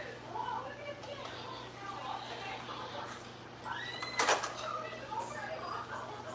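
A ladle clanks sharply once against the cooking pot about four seconds in, over faint talk and a steady low hum.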